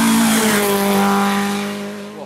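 Peugeot 205 rally car's engine held at high revs, one steady note that dips a little in pitch about half a second in, then fades away near the end.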